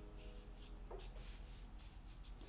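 Black felt-tip marker drawing short strokes on paper, faintly, with a small tick about a second in.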